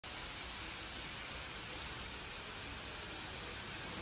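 Pressure-washer jet spraying water onto the rear of an SUV: a steady hiss.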